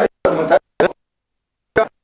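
A few short, clipped fragments of speech, three brief bursts with dead silence between them.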